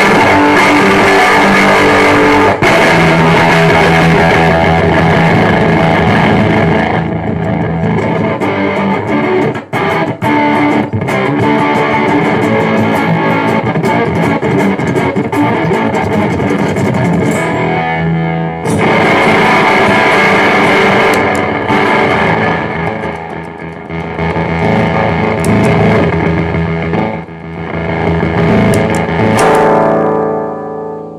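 Electric guitar played through a fuzz pedal combining Total Spack Vibes Right Now and Hair Of The Dog fuzz circuits, giving a heavily distorted, fuzzy tone. The riffs run loud and sustained, stop briefly about midway, then carry on.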